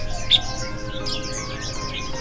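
Caged songbirds chirping, many short quick calls overlapping, over background music with steady held notes.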